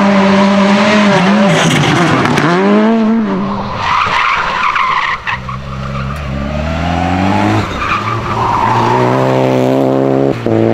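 Rally car engines at high revs. First one lifts off and picks up again in quick dips. Then a Renault Clio rally car's tyres squeal as it slides through a tight hairpin, and its engine climbs in pitch as it accelerates away through the gears.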